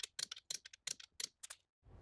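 A ratchet clicking on the main-cap bolts of a four-bolt-main engine block: a quick, uneven run of light clicks, roughly eight a second, that stops about one and a half seconds in.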